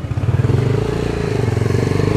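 Motorcycle engine running close by, getting louder over the first half second as it comes up and then holding steady.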